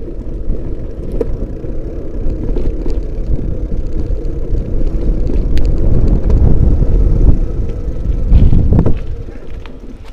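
Wind buffeting the microphone, mixed with the rumble and rattles of travel over rough asphalt. It is loudest from about six to nine seconds in and eases near the end.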